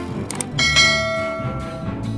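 A short double click, then a bell ding about half a second in that rings on and fades slowly: the sound effect of a subscribe-button and notification-bell animation. Background music plays underneath.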